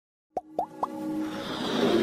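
Intro jingle sound effects: three quick rising plops, each ending a little higher than the last, then a swelling electronic riser that builds toward the end.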